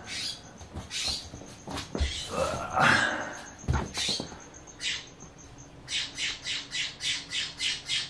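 Blue jay calling, a string of short harsh squawks that becomes a rapid even series of about three calls a second near the end.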